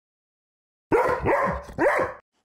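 A dog barking: a few quick barks in a row, starting suddenly about a second in after silence.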